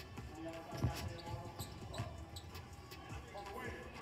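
A basketball being dribbled on a hardwood court: a few faint bounces about a second in, under faint background voices.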